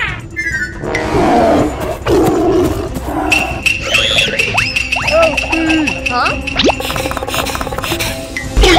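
Cartoon soundtrack: music with a growling roar about a second in, then a young cartoon pig's distressed cries over a long held high note.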